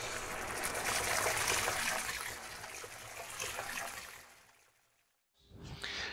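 Intro logo sound effect: a watery, trickling rush that dies away about four seconds in, followed by a brief faint sound near the end.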